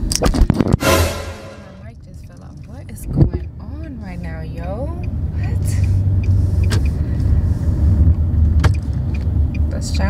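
Car heard from inside the cabin: a steady low engine and road rumble that grows louder as the car moves, after a few loud knocks in the first second and a sharp click about three seconds in. A voice is heard briefly in the middle.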